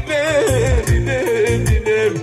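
Live band playing dance music: a wavering, heavily vibratoed melody line over a steady, repeating drum and bass beat.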